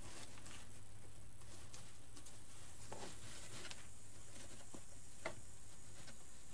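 Steady electrical buzz of a hot glue pot, with soft rustling and small clicks as ribbon and artificial pine are handled and a pipe cleaner is twisted into a bow, one click a little sharper near the end.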